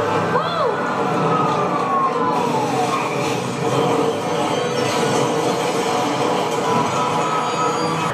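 Ambulance siren on a TV drama soundtrack, its wail gliding down in pitch over the first three seconds. After that comes a steady, dense din with a low held tone.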